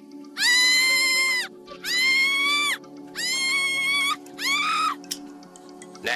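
A woman screaming four times, each a long high-pitched cry of about a second, the last one shorter, over a low steady music drone.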